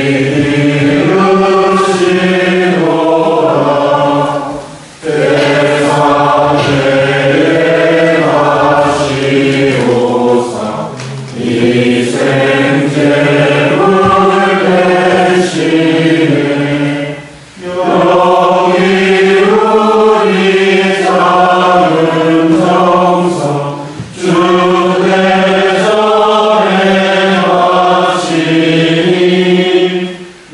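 A congregation singing a Korean Catholic hymn together, the offertory hymn of the Mass, in long phrases broken by short breaths about every six seconds.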